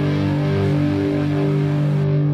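Background music: a guitar chord held and ringing steadily.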